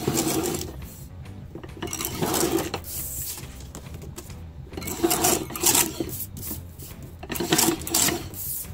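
A sliding paper trimmer's blade carriage run along its rail, cutting through a laminated sheet. There are about four short passes a couple of seconds apart.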